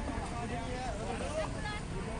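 Street ambience: several people talking over a steady rumble of road traffic.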